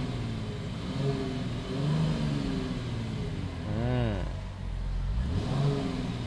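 Mercedes-AMG GT 53's 3.0-litre inline-six engine and exhaust revved at standstill, in several rising-and-falling blips, the biggest about four seconds in.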